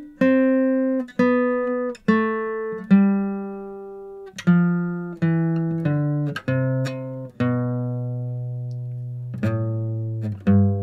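Steel-string acoustic guitar picked one note at a time, walking down the C major scale, each note left to ring. The run ends on the low C root, held for about two seconds before the next note is picked near the end.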